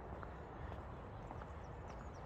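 Footsteps of a person walking on a tarmac road, faint regular steps about every half second over a low steady rumble. A few short bird chirps near the end.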